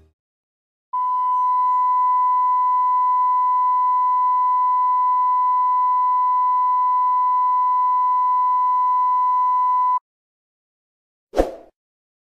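Television colour-bars test tone: a single steady, loud beep held for about nine seconds that cuts off suddenly. A brief sound effect follows near the end.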